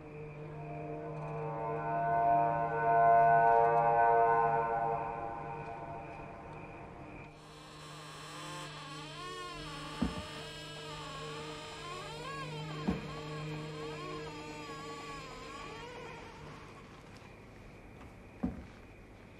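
Eerie horror-film score: a layered droning chord swells up and fades, then gives way to wavering, warbling tones over a low hum. Two sharp single knocks fall about ten and thirteen seconds in.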